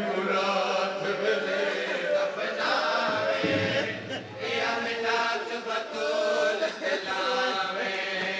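A crowd of men's voices chanting a noha, a mourning lament, together in a sustained, wavering melody.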